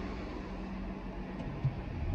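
Car engine running, heard from inside the cabin as a steady low rumble with a faint hum, and one short knock about one and a half seconds in.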